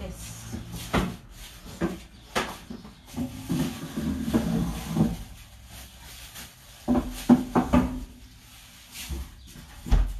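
Scattered knocks and clatter of ingredients being fetched in a kitchen: doors and containers handled out of sight. The sharpest cluster comes about seven to eight seconds in.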